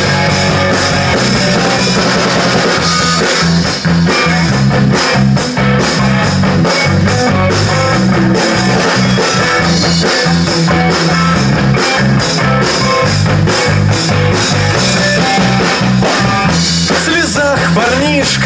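A live rock band playing loudly: electric guitar, electric bass and drum kit in a passage without singing.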